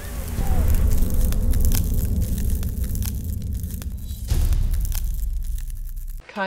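Logo sting sound effects: a deep, loud rumble with scattered crackles. It shifts to a new sting about four seconds in.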